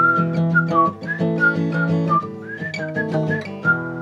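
Acoustic guitar strummed in a steady rhythm while a person whistles a melody over it, a string of short notes with small slides between them.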